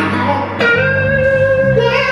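Live blues band playing, electric guitar to the fore over bass, drums and keyboard. A long held high note comes in about half a second in.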